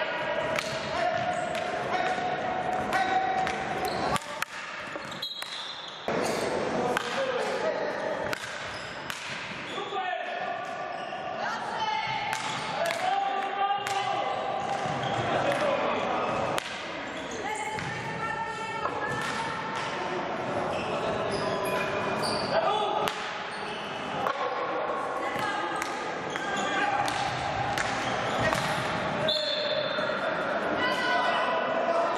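Indoor hockey play in a reverberant sports hall: players shouting and calling out, over repeated sharp knocks of sticks and ball on the wooden floor and side boards.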